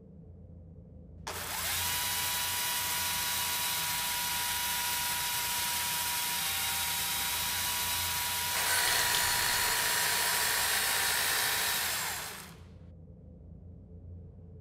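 A chainsaw starts about a second in and runs steadily at speed. About eight and a half seconds in it gets louder and rougher, then it winds down and stops near the end.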